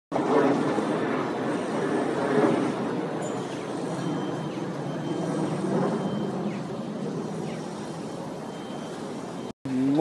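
City street traffic noise, a steady rush of passing vehicles with faint voices in the first couple of seconds; it cuts off abruptly near the end.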